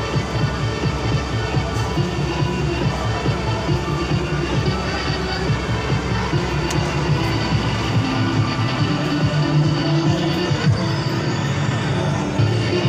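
Arcade din: electronic music and jingles from the game machines all around, running steadily without a break.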